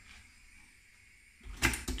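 Quiet kitchen room tone, then near the end a quick cluster of sharp knocks and clicks from things being handled at a toaster.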